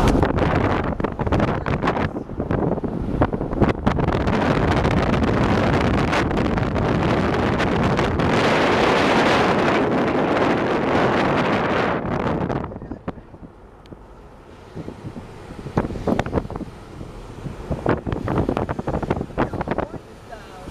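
Wind buffeting the microphone through an open car window while the car drives, mixed with road noise. The rush drops sharply about twelve seconds in, then comes back in uneven gusts.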